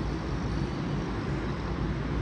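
Steady low rumble of outdoor background noise, the hum of distant city traffic.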